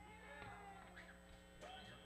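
Near silence: faint steady room hum with a few faint, indistinct pitched sounds.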